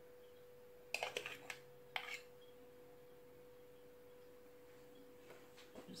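Metal dessert spoons clinking lightly as meringue is scraped from one to the other onto the tray: a quick cluster of small clicks about a second in and one more at two seconds, over a faint steady hum.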